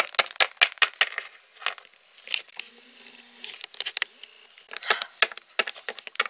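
Irregular clicks and light taps from plastic toy figurines being handled and moved about by hand close to the microphone.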